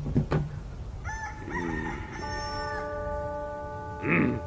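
Soundtrack of an animated western standoff: a quick swish, then a drawn-out pitched call from about a second in, then a chord of several steady held tones that carries on.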